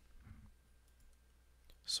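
Faint clicks of a computer keyboard and mouse, quiet between spoken phrases.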